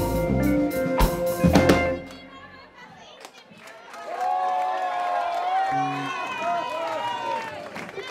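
Live reggae band, drums, bass and electric guitar, playing the end of a song and stopping about two seconds in. After a short lull, the club audience cheers and shouts from about four seconds in, with some clapping.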